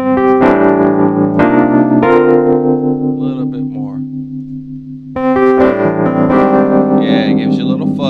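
Sampled Wurlitzer 200A electric piano playing sustained chords with its fuzz (speaker-overdrive) control turned up a little, giving a slightly gritty, warm tone. Chords change about half a second and a second and a half in and ring down, then a new chord is struck about five seconds in.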